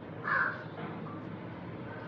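A bird gives one short, harsh call about a third of a second in, over a faint steady low hum.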